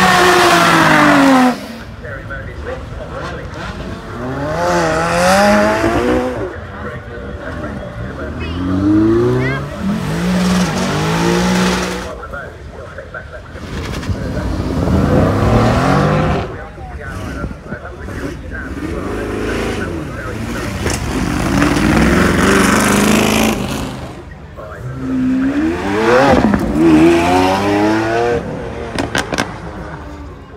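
Sports car engines revving hard and accelerating away from a start line, one car after another. Each run climbs in pitch in steps through the gear changes, and the loudest launch comes in the first second and a half. Among them is a Mercedes-AMG GT R's twin-turbo V8.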